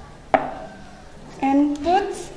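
A single sharp clack as a small metal coffee canister is set down on a wooden table. A voice begins about one and a half seconds in.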